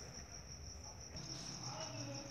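Faint, steady high-pitched chirring of crickets in the background, heard through a pause in the narrating voice.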